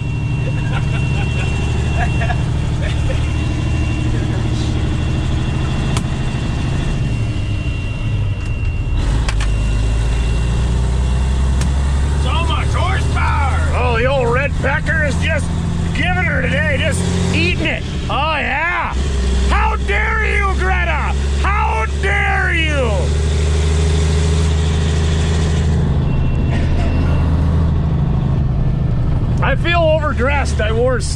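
Caterpillar diesel of a 1983 Peterbilt 362 cabover running under load while driving, heard from inside the cab. The engine note drops in steps about nine seconds in and again near eighteen seconds.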